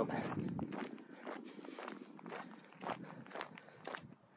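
Footsteps of a person walking at an easy pace on an unpaved road, about two or three steps a second.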